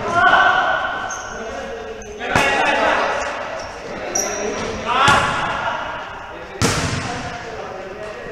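A basketball striking hard surfaces in a large, echoing gym: three loud, ringing thuds, about a second in, past halfway and near three-quarters, over short high squeaks of shoes on the court.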